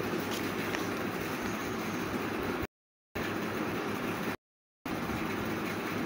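Steady rumbling background noise with no distinct events, broken twice by abrupt drops to total silence lasting about half a second each.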